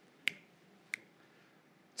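Two crisp finger snaps, about two-thirds of a second apart, marking a beat.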